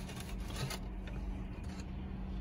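Faint crackling of a folded New York-style pizza slice's crisp crust as the slice is handled and lifted from its box.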